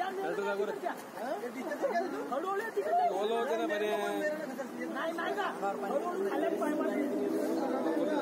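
Several people's voices talking over one another in unclear chatter.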